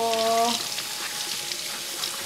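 Kitchen faucet running steadily, its stream of water splashing onto a halved napa cabbage and into the sink with an even hiss.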